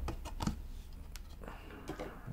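A few faint, irregular clicks and taps from hands handling a cardboard watch presentation box, over a low steady hum.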